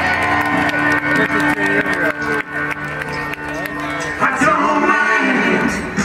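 Amplified rock music over an outdoor festival sound system, heard from inside the crowd. A sustained chord holds for the first four seconds or so, then the music changes, with people talking close by throughout.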